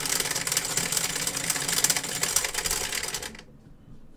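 Push-button electric dice roller running: two dice rattle rapidly against its clear plastic dome over a low motor hum, then stop about three seconds in.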